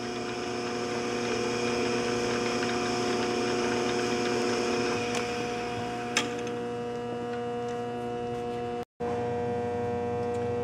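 Vintage 1952 Shopsmith 10ER running on the slow-speed reduction kit: its 1725 RPM AC motor gives a steady hum while the belts and pulleys turn the spindle down at about 213 RPM. A single sharp tick comes about six seconds in, and the sound cuts out for an instant near the end.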